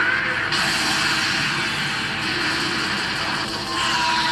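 Anime soundtrack of a dragon's breath attack being fired: a long, steady rushing blast over background score.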